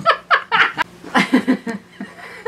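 A woman's giggling laughter in short pulses: a first run of laughs, then a second run about a second in, fading near the end.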